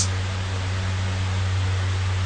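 Steady low hum with even hiss underneath: background noise on the recording.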